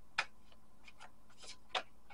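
Tarot cards being shuffled and handled, giving a few light, irregularly spaced clicks and snaps of card on card.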